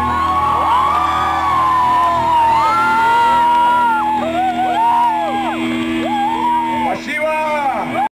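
A live rock band's final held chord ringing on and cutting off about seven seconds in, with an audience whooping and shouting over it.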